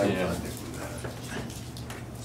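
A short vocal sound from a person, falling in pitch, about half a second long at the start, followed by faint murmured voices, over a steady low electrical hum.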